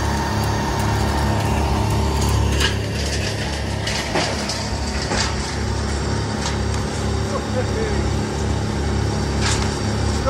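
A large engine on the tree-service equipment idles steadily, with a few sharp knocks over it, one about a third of the way in and another near the end.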